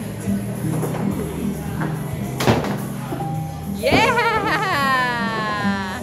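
Arcade background music with a steady low beat. There is a single sharp knock about two and a half seconds in. Near the end comes a loud warbling tone that then slides steadily down in pitch.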